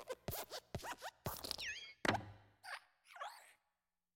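Cartoon sound effects for the hopping Luxo Jr. desk lamp: a quick series of springy hops with short falling squeaks, a heavier thud about two seconds in as it lands on and flattens the letter I, then two creaky squeaks of its joints.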